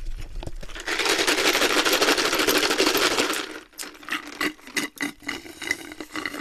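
Loud, close eating noise while a large toast is being eaten: a dense rapid crackling and rustling for about two and a half seconds, then scattered clicks and small mouth and handling noises.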